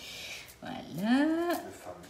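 Speech: a single drawn-out, sing-song "voilà" that rises and then falls in pitch, after a brief soft hiss.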